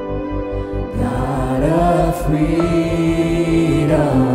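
Live worship band playing a contemporary worship song over a steady pulsing low beat. A singer's voice comes in about a second in and holds a long note toward the end.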